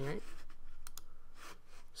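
A few quick, sharp clicks at the computer about a second in, from keys or a mouse button, just after a spoken word ends.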